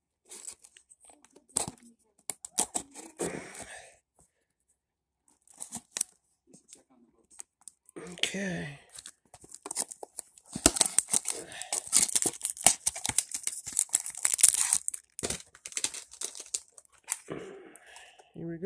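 Plastic wrapping on a box of trading cards being cut and torn open: scattered clicks and short rustles at first, then, from about ten seconds in, several seconds of loud crinkling and tearing as the wrapper on the stack of cards is ripped off.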